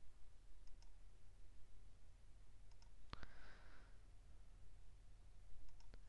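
Faint paired clicks of a computer mouse, a few times, over a low steady hum. A sharper double click comes about three seconds in, followed by a short hiss.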